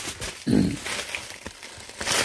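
A short, low vocal sound from a person about half a second in, amid light rustling and handling of plastic packaging.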